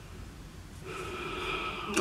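A person sniffing a scented product held to the nose: a faint, breathy inhale through the nose that starts about a second in and grows slightly louder.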